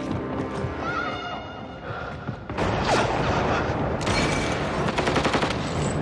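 Film score with held tones, then, about two and a half seconds in, sudden sustained rapid gunfire from several rifles that runs under the music and grows louder.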